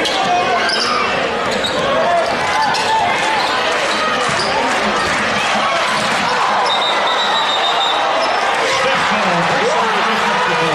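Basketball bouncing on a hardwood gym floor under the steady noise of a crowd of many voices talking and shouting in a large, echoing gymnasium.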